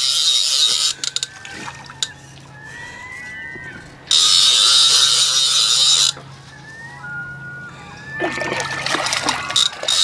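A fishing reel's ratchet buzzing as a hooked fish pulls line off it, in two runs: a short one at the start and a longer one of about two seconds from about four seconds in. A fish splashes at the surface near the end.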